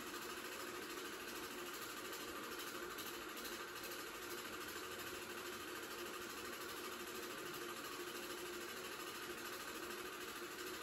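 Film projector running, a steady mechanical whir that does not change.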